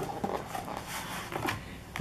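A small cardboard product box being handled and slid open on a table: soft rubbing and scraping, with a couple of faint clicks.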